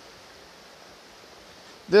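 Faint steady background hiss with no distinct sound, then a man's voice starting right at the end.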